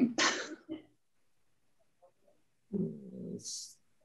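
A person's voice over a video call: a short vocal sound at the start, then a gap of silence, then a low wordless voice sound about three seconds in that ends in a breathy hiss.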